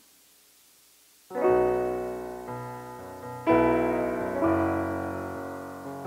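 Digital keyboard with a piano voice playing the opening chords of a song: near silence for about a second, then a sustained chord struck and left to ring and fade, a second chord about two seconds later, and more chords near the end.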